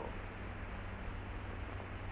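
Steady hiss with a low hum, the background noise of an old film soundtrack, with no other distinct sound.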